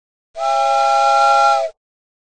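A single blast of a multi-note whistle sound effect: several held notes sounding together as a chord with a hiss over them, lasting about a second and a half and starting and stopping abruptly against silence.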